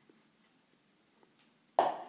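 A quiet room with a few faint small ticks, then a sharp knock near the end as a plastic juice jug is set down on a wooden cutting board.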